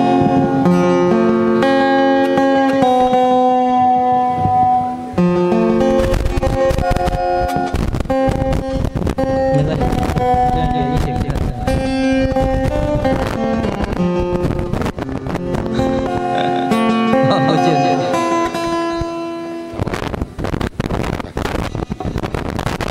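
A man singing into a microphone to his own acoustic guitar strumming, holding long notes. The singing stops near the end, leaving the guitar.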